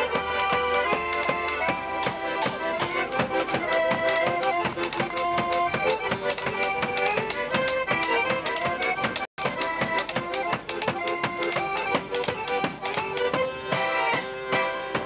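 Polish folk band playing a lively tune: accordion carrying the melody over a double bass and a hand-held drum struck with a beater, keeping a steady beat. The sound cuts out completely for a moment about nine seconds in, a glitch in the old tape recording.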